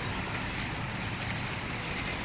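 Steady road traffic noise: cars driving past on the road.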